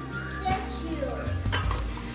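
Cooking in a pot: a utensil stirring, with two light knocks against the pot about a second apart, under quiet background music.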